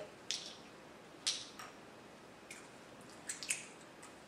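About half a dozen short, light clicks and taps of small plastic containers being handled: a bottle of rubbing alcohol set down on a tabletop and a small specimen vial being capped.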